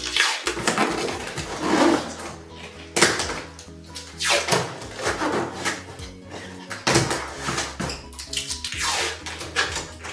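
Packing tape being pulled off the roll in about six long, noisy pulls, over steady background music.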